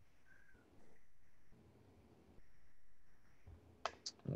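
Near silence: faint background hiss from an open microphone on a video call, cutting in and out twice, with a short click just before the end.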